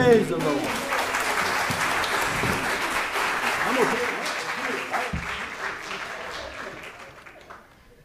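Congregation applauding as the choir's song ends, the clapping fading away over about seven seconds, with a few voices mixed in.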